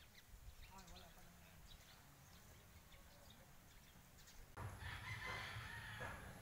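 A rooster crowing in the distance: one crow of about a second and a half starts near the end, with a few faint shorter calls about a second in.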